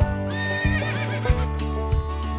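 A horse whinnying once for about a second, starting about a third of a second in, its pitch held and then wavering downward, over background music.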